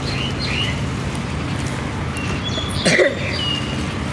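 Steady background of rain, with a few short high squeaks and a brief voice sound, the loudest moment, about three seconds in.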